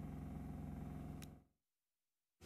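A faint, low, steady background hum fades out about one and a half seconds in, leaving dead digital silence.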